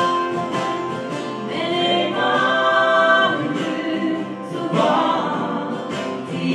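A woman singing a song in Norwegian, holding long notes, accompanied by acoustic guitar and lap steel guitar.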